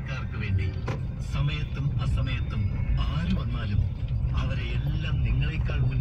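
Steady low rumble of a car's engine and road noise, heard from inside the cabin while driving slowly, with indistinct talk over it.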